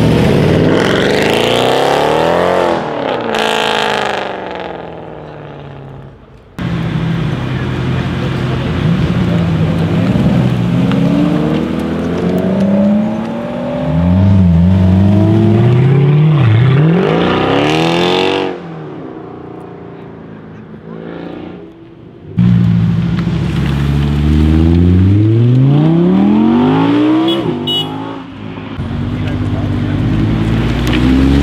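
Mercedes-Benz C63 AMG V8s accelerating hard away from a standstill, the engine note climbing in rising sweeps through the gears and dropping as they pull off. This happens in separate passes, the third another sports car's engine climbing hard.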